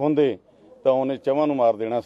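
An older man's voice speaking in a wavering, unsteady pitch that the speech recogniser could not turn into words. There are two stretches: a short one at the start and a longer one from just under a second in.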